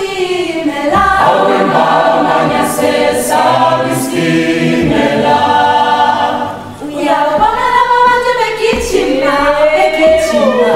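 A mixed choir singing unaccompanied, in sustained phrases with a brief break about seven seconds in.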